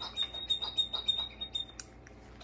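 A single high whistled note held steady, wavering slightly, that stops abruptly near the end, with scattered light clicks under it.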